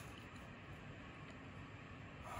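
Near silence: faint, steady room noise with no distinct sound.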